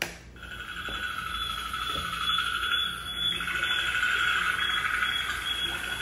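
Opening sound design of a film trailer: a steady, high ringing drone of two held tones that comes in just after the start and holds, over a faint low hum.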